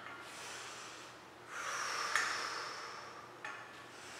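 A woman breathing audibly at rest: a soft breath, then a longer exhale about one and a half seconds in that fades away, with a small click partway through.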